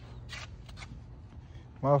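A pause in a man's speech with a low steady background rumble and a few faint rustles, then his voice starts again near the end.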